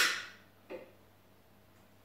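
An oven control knob being turned: one sharp click that fades within about half a second, then a faint second tap under a second in.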